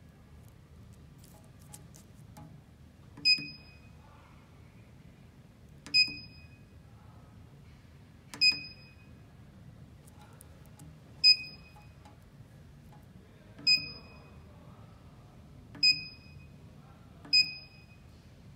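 The keypad of an RT-719 bottle cap torque tester beeping as its keys are pressed: seven short, high-pitched electronic beeps, each with a click at the start, about two to three seconds apart.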